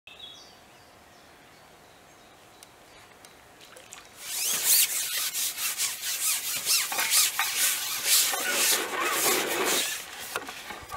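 Carbon fishing pole being drawn back by hand when the angler ships in: a loud, uneven rubbing and rasping of the pole sliding against hands and clothing. It starts about four seconds in and is made of many short scraping strokes.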